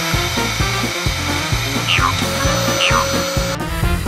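Vacuum cleaner running under upbeat background music, then switched off abruptly near the end. Two short falling whistle-like glides sound about halfway through.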